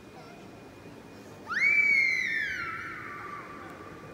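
A single loud, high-pitched squeal starts suddenly about a second and a half in, then slowly sinks in pitch over about two seconds, echoing on in the large domed hall.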